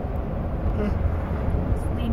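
Steady low rumble of engine and road noise heard inside the cabin of a moving van.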